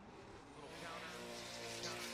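Faint, steady engine note of a drift car held at constant revs while it slides sideways through its initiation.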